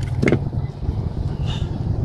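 Strong wind buffeting the microphone, a steady low rumble, with a brief sharp click about a quarter second in.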